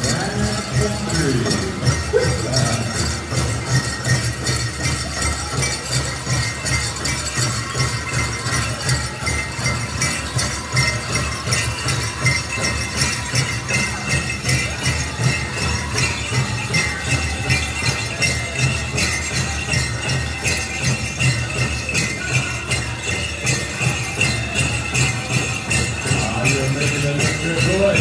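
A powwow drum group playing a grand entry song: the big drum is struck in a steady, even beat under high-pitched singing. The bells on the passing dancers' regalia jingle throughout.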